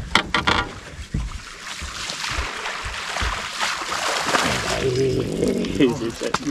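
Water splashing as a hooked black bass thrashes at the surface and is scooped into a landing net, after a few sharp clicks at the start. A voice calls out near the end.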